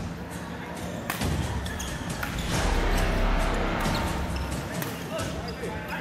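Indoor badminton rally: sharp racket strikes on the shuttlecock at irregular intervals, with short squeaks of court shoes on the floor and voices in the hall.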